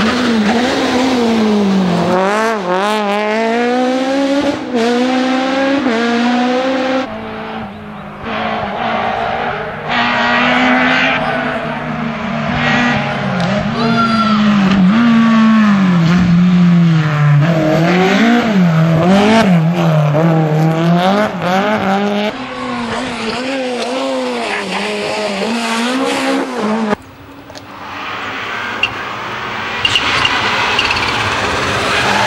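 Rally cars driven hard on a tarmac stage, in short clips that cut abruptly from one car to the next: engines revving high and dropping with each gear change and lift for the corners. The cars heard include a Citroën Saxo, a Peugeot 205 and a Subaru Impreza WRC.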